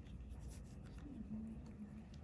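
Faint scratching and rubbing with a few soft ticks over a low room hum, from gloved hands and a fine extraction needle working on skin.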